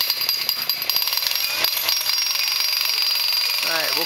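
Rapid mechanical pounding from the tent crew's work, like a jackhammer, for about the first two seconds, then easing off, over a steady high-pitched whine.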